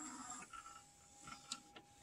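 Very faint mechanism sounds from a Sony CDP-C505 five-disc CD changer: a low whir with a few soft clicks, one of them about a second and a half in.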